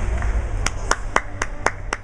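Hands clapping six times in an even run, about four claps a second, close to the microphone, over a steady low rumble of background noise.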